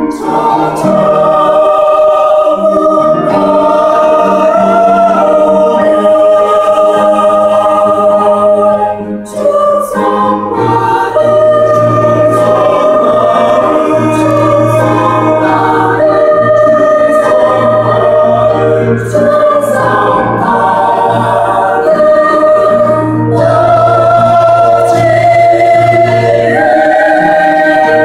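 Mixed church choir of men and women singing a hymn in Korean, in sustained chords, with a short break between phrases about nine seconds in.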